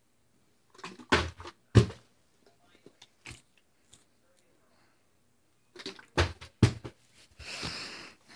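Sharp thuds of a partly filled plastic water bottle being flipped and landing, two knocks about a second in and two more near the end.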